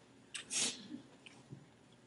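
A person's breath: two short, faint breathy puffs about half a second in, with no voice in them.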